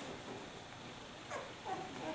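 Newborn Leonberger puppy whimpering: two short, high squeaks in the second half.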